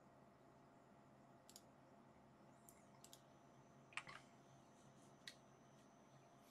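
Near silence with a few faint, short computer mouse clicks, the loudest about four seconds in.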